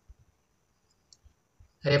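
A few faint, scattered taps and clicks of a pen writing on a tablet, with a man's voice starting just before the end.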